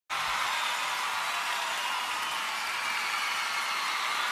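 Audience applauding at a live concert, a steady wash of clapping that starts abruptly and holds level.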